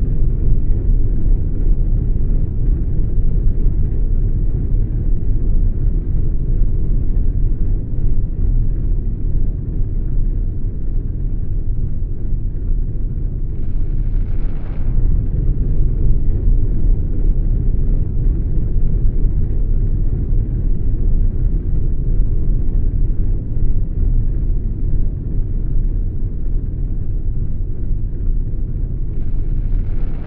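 A steady, deep rumbling drone from a soundtrack, with a brief higher rushing swell about halfway through and another at the end.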